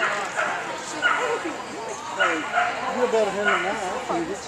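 A dog barking about five times, short sharp barks spread across the few seconds, over people's voices.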